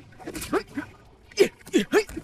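Men grunting and yelling with effort as they fight hand to hand: about four short, sharp cries, one near half a second in and three close together in the last second, each dropping in pitch.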